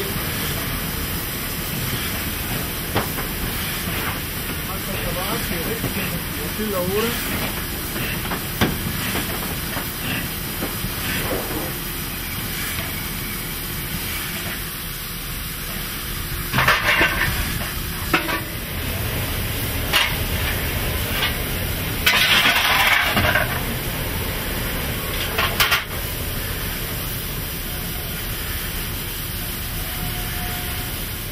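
Steam locomotive standing with steam hissing steadily, and two louder surges of steam about halfway through and a few seconds later, plus a few sharp clicks.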